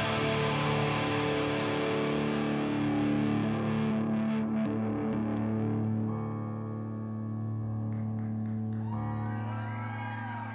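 Live rock band with distorted electric guitar holding a droning final chord. The dense wash thins out about halfway through to a few long sustained notes as the song winds down.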